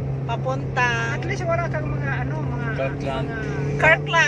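Car driving on a highway, heard from inside the cabin: a steady low engine and road hum.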